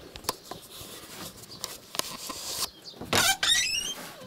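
A few light knocks on wooden boards, then a plank door squeaking on its hinges as it is pulled open: a short, high, rising squeal about three seconds in.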